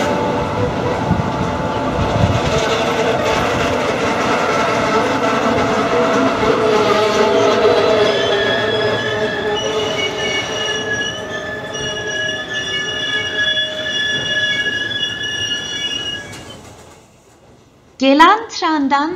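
A car-carrying train loaded with cars rolls past, its wheels and wagons running noisily over the rails. From about halfway through, its wheels give a steady high-pitched squeal made of several tones, then the sound fades out near the end.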